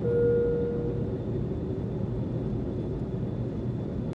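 Airliner cabin noise: a steady low rumble of engines and airflow. A short steady tone sounds at the start and fades out after about a second.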